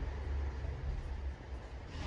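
Faint steady low rumble of background noise, with no distinct events.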